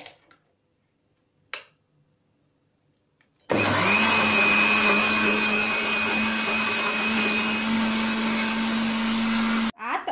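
Countertop electric blender blending a thick milk-and-cheese mixture. After two short clicks it starts about three and a half seconds in, runs steadily at one speed with a high whine, and cuts off suddenly just before the end.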